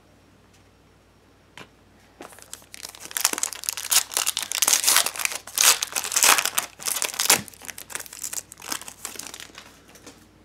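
The foil wrapper of a Bowman Sterling baseball card pack being torn open and crinkled in the hands: a dense crackling that starts about two seconds in and tails off near the end.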